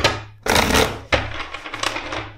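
A deck of tarot cards being shuffled and handled on a table: a sharp knock, then three short rustling flurries of cards.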